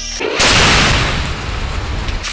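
A large explosion going off about half a second in, with a sudden loud blast followed by a long fading rush and rumble. The song's music plays just before it and is swamped by the blast.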